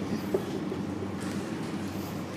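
Room tone: a steady low machine hum, with a faint short tap about a third of a second in.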